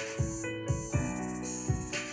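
Digital keyboard playing sustained piano chords of an R&B progression in A major (A major, B minor, F-sharp minor, D major) over a drum beat with kick drum and hi-hat. A chord is held from about a second in.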